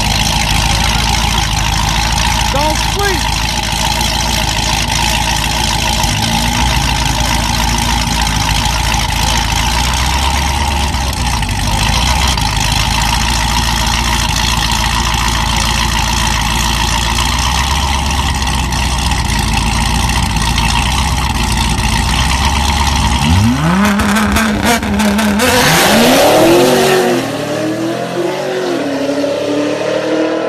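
Two street-race cars, one a Cadillac CTS-V with a supercharged V8, running loudly side by side at the start line. About 23 seconds in they launch, the engine note climbing and dropping through several quick upshifts, then fading as the cars pull away.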